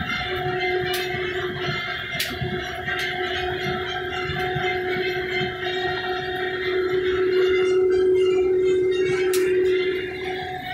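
Farm machine's engine and drivetrain running, heard from inside its cab, with a steady whine over the engine noise. The whine grows louder about seven seconds in, and a few sharp ticks sound over it.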